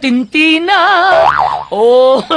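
A voice vocalising in a sing-song, strongly wobbling pitch, without clear words. About halfway through, a quick up-and-down whistle-like glide cuts in, then a rising held note begins near the end.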